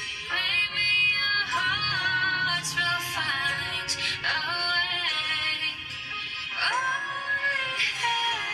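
A woman singing a slow ballad over instrumental backing, holding long notes with glides and vibrato between them.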